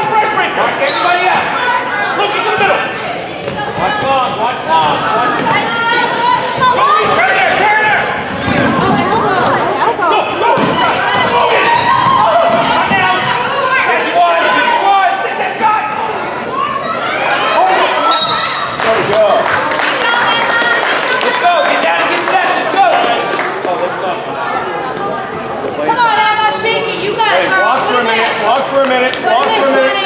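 A basketball game in a gym: a ball dribbled and bouncing on the hardwood floor, under near-constant calling and shouting from players and spectators, echoing in the large hall.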